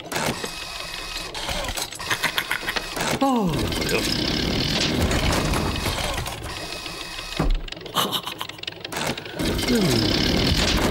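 Cartoon sound effects of a mechanical grabber arm moving: a busy run of rapid mechanical clicking and whirring, with two swooping sounds falling in pitch, one about three seconds in and one near the end.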